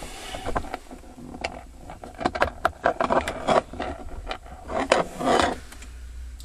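Scattered clicks and scraping of small parts and tools being handled while the dome-light fitting is screwed back into the headliner, busiest in the second half.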